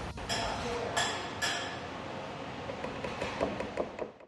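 A few sharp ceramic clinks, three close together early on and a quicker cluster near the end, from a rice paddle knocking against the rim of an earthenware rice pot as the rice is served. Low room murmur runs underneath.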